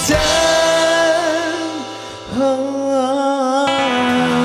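A band playing live with a male lead singer holding long sung notes, wavering in vibrato; the voice breaks off briefly about two seconds in, then holds another long note.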